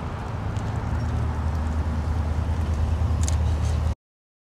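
Ford Police Interceptor Utility SUV driving past close by, its engine a steady low hum that slowly grows louder as it nears. A few faint ticks come about three seconds in.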